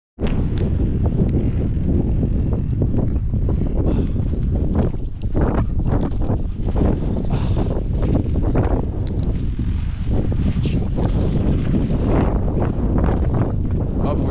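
Wind buffeting the microphone, a loud steady low rumble with scattered knocks and rustles.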